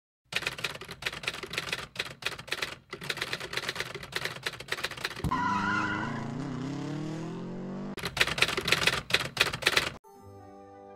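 Rapid, irregular clicking like typewriter keys, broken off for about three seconds in the middle by a small motor vehicle's engine whose pitch rises as it accelerates. The clicking comes back near the end.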